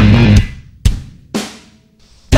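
A rock band playing with distorted guitar, bass and drums stops dead about half a second in. Two lone drum hits follow, half a second apart, the second ringing on, then a near-silent break.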